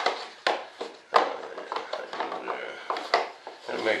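Hands handling and test-fitting parts of an RC jet model: a few sharp clicks and knocks, the loudest a little over a second in, with light rubbing and handling noise between them.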